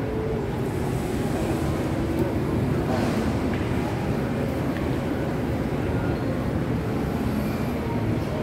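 Indoor shopping-mall ambience: a steady low rumble of air handling and echoing hall noise, with faint, indistinct voices in the background.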